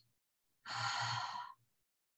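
A woman's audible exhale, one sigh-like out-breath lasting about a second that starts about half a second in: the paced 'out' breath of a yoga breathing cue.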